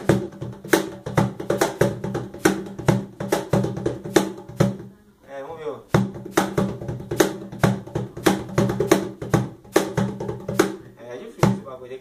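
A wooden cajón played by hand, struck about three or four times a second, mixing deep bass strokes from the centre with sharper slaps, with a short break about five seconds in.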